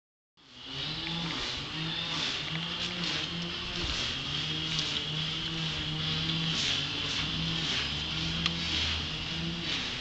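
A 1983 Honda Shadow 500's V-twin engine idling steadily through its custom-fabricated exhaust.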